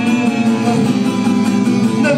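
Acoustic guitar played live, a steady instrumental passage of plucked and strummed chords between sung lines.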